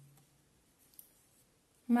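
Near quiet during hand sewing with needle and thread, broken once about halfway by a single faint click.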